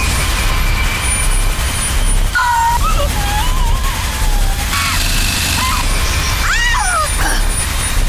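Horror-trailer soundtrack: a loud, dense low rumble and noise, over which a woman's voice gasps at the start, then moans in a wavering pitch and gives a sharp cry that rises and falls near the end.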